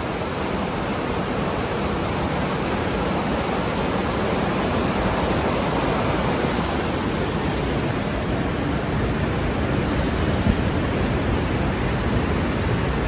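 Steady, loud rushing noise of floodwater pouring through a concrete storm-drain tunnel, heard from inside the tunnel.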